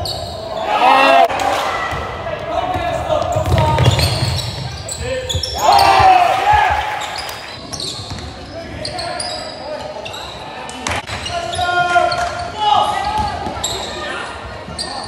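Basketball game sound echoing in a sports hall: the ball bouncing on the court, short high sneaker squeaks, and players and spectators shouting, loudest about a second in and again about six seconds in.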